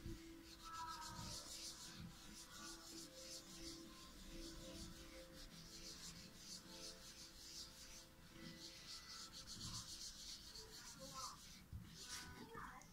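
Faint, quick back-and-forth swishing of a wet cleaning wipe rubbed over the back of a smartphone, cleaning the surface before a metal plate is stuck on.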